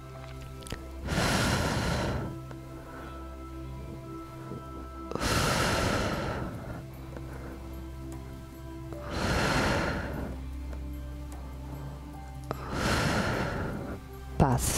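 A woman breathing out heavily into a close headset microphone, four long breaths about four seconds apart, over quieter background music.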